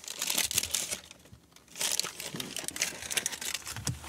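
A paper pharmacy bag crinkling and rustling as it is handled and opened, in two spells with a short lull about a second in.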